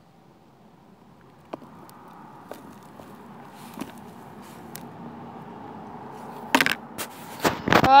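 Garden soil mix pouring into a plastic tub onto a bed of sand, a soft rushing hiss that builds steadily louder with a few light ticks of clumps landing. Two sharp knocks sound near the end.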